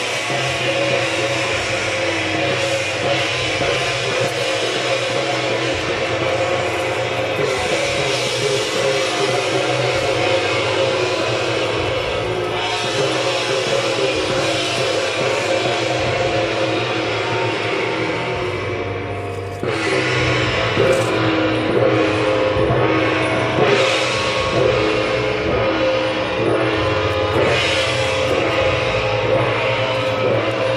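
Traditional temple-procession percussion music: hand gongs, drum and cymbals playing continuously at a loud level, with a short dip just before two-thirds of the way through, after which it comes back louder.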